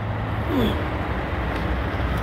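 Truck engine idling: a steady low rumble, with a faint short falling tone about half a second in.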